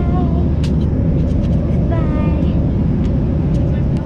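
Steady airliner cabin noise, a constant low drone from the aircraft.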